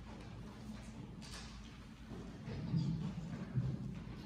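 Microphone handling noise: low, dull bumps and rubbing as a vocal microphone is gripped and adjusted on its stand, growing louder about two and a half seconds in.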